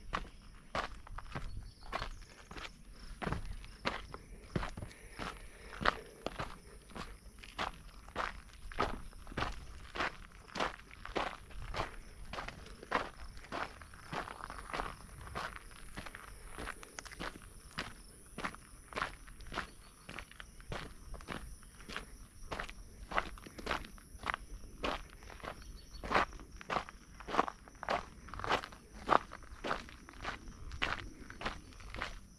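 A hiker's footsteps on a sandy, gritty dirt trail, one step about every half second at a steady walking pace.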